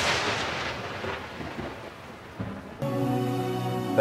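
A thunder-clap sound effect: a sudden loud crash of noise that fades away over about two and a half seconds. Near the end, steady music notes from the car radio come in.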